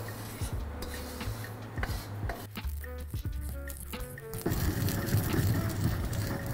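Stone mortar and pestle grinding toasted Sichuan peppercorns and sesame seeds into a powder: gritty rubbing of the pestle against the stone, strongest in the last second and a half, over background music.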